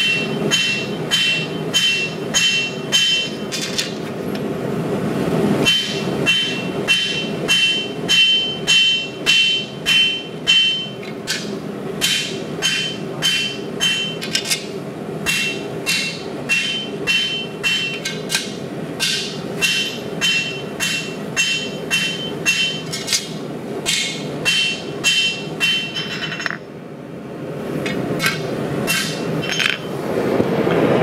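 Rounding hammer's round face striking red-hot 80CrV2 steel on an anvil by hand, about two to three blows a second in runs, each with a high metallic ring, drawing out the blade's edge an inch at a time. A little before the end the blows stop and a steady rushing rises, the propane forge's burner.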